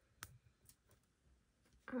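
A few light clicks and ticks of tweezers and stickers being handled on planner paper, with one sharper click near the start, over a quiet room.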